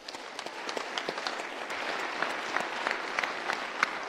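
A large audience applauding: dense clapping that starts at once and builds over the first second or so into a steady round.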